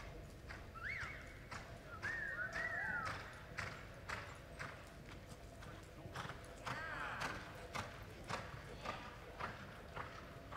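Horse's hooves loping on soft arena dirt, a quick regular beat of about three hoof strikes a second. A few short, high, sliding calls sound over it, about a second in, between two and three seconds in, and near seven seconds.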